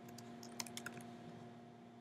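Faint computer-keyboard typing as a file path is edited: a quick run of key clicks in the first second, thinning out after that, over a steady low hum.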